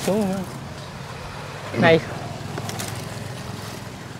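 A steady low vehicle engine hum, with a few short spoken words, one at the start and one about two seconds in.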